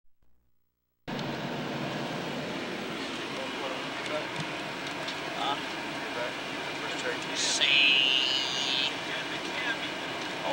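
Steady airliner cabin noise that cuts in suddenly about a second in, with faint passenger voices under it. A brief, louder hiss comes about seven and a half seconds in.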